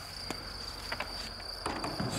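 Crickets chirping, a steady high trill.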